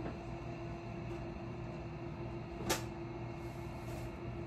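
A steady low electrical or fan-like hum, with one short knock or clack about two-thirds of the way in as clothing and objects are handled.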